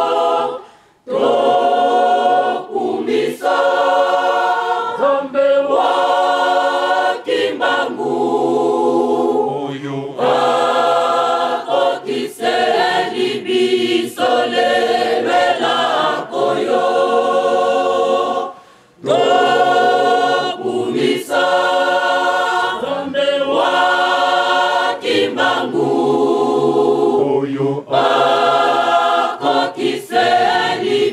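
A crowd of men and women singing together without instruments, in short sung phrases. The singing breaks off briefly about a second in and again about two-thirds of the way through.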